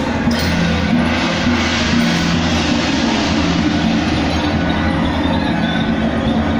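Loud, continuous temple-procession percussion: a drum with clashing cymbals and gongs playing without a break, over a steady low drone.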